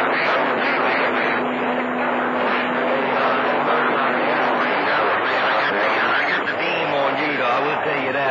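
A CB radio on channel 28 receiving a skip signal through its speaker: a loud, steady wash of static with voices buried in it, too garbled to make out. A steady low tone runs under the noise and stops a little past halfway.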